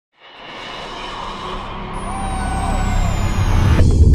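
Logo-intro sound effect: a low rumbling whoosh that builds steadily in loudness, with a thin high tone gliding slowly downward over it from about halfway in. It ends near the end in a sudden hit with rapid stuttering glitch clicks as the logo appears.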